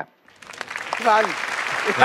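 Studio audience applause swelling up a moment after the start and holding steady, with a voice calling out over it twice.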